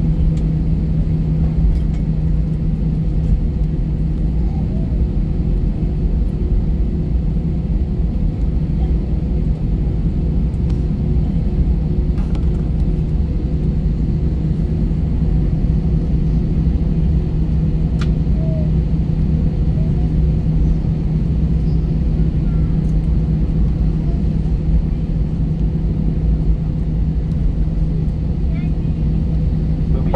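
Inside the cabin of an Airbus A320neo on the ground: the engines run at a steady idle, a constant low rumble with a steady hum and no change in pitch.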